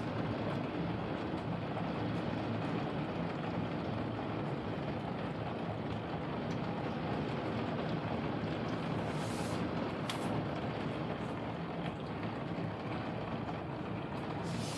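Heavy rain pouring steadily, heard through a closed window, with a faint low hum underneath.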